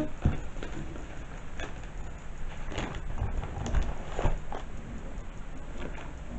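Paper and cardboard being handled: soft rustling with a few light knocks at irregular intervals as a cardboard gift box and paper-wrapped items are moved about.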